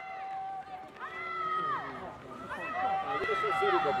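Several people shouting encouragement over one another, some calls drawn out long, as at a track race.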